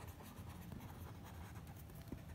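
Pen writing on paper: faint scratching made of many short strokes as a word is written out.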